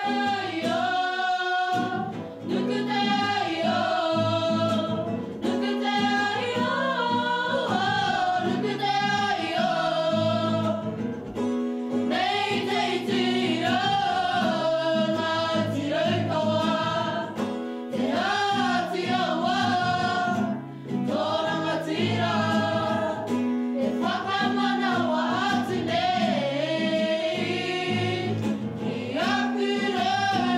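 A group of voices singing a song together over a steady backing of low sustained notes.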